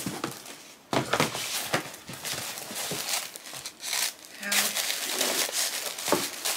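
Wrapping paper rustling and crinkling as a gift package is unwrapped by hand, starting sharply about a second in.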